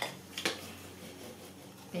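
Two short light knocks from craft tools and paper being handled on the table, the first at the very start and the second about half a second in, over a faint steady room hum.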